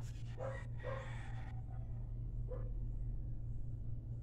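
Three faint, short animal calls over a steady low hum.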